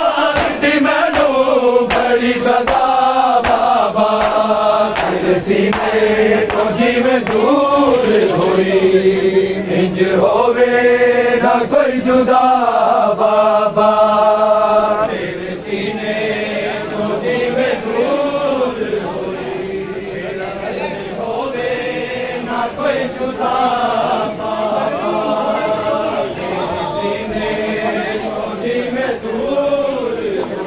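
A group of men chanting a Punjabi noha, a Shia mourning lament, together, with sharp slaps of matam (chest-beating) in the first several seconds. The chanting grows quieter about halfway through.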